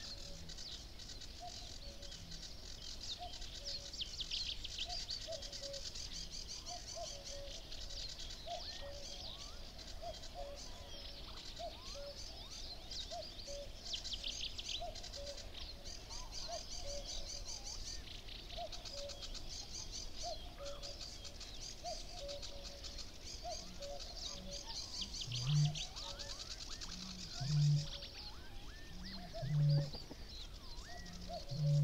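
Dawn chorus of many small songbirds in a reedbed, with a common cuckoo calling over and over throughout. Near the end a great bittern booms three times, deep and louder than everything else, about two seconds apart.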